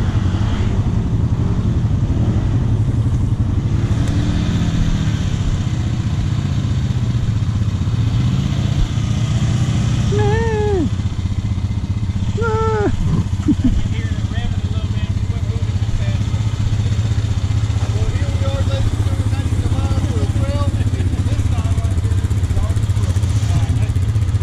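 ATV engines running at trail speed, a steady low drone. Two short falling pitched calls stand out about ten and thirteen seconds in.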